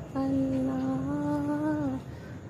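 A single voice humming one long, slow held note without words, stepping up slightly about a second in and dipping at the end, as part of a devotional vocal chant of "Allah".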